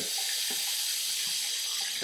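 Tap water running steadily into a sink, an even hiss that starts abruptly and holds at a constant level.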